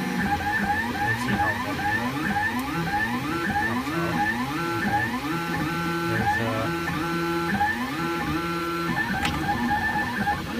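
XYZprinting Da Vinci Duo 3D printer printing: its stepper motors whine in short tones that jump and slide in pitch several times a second as the print head moves back and forth over the bed.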